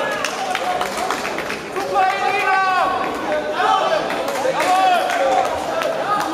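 Raised voices calling out from ringside in a large echoing hall during a boxing bout, with short sharp knocks scattered throughout.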